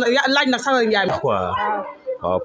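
A woman talking, her voice rising and falling, with a drawn-out gliding stretch about a second in.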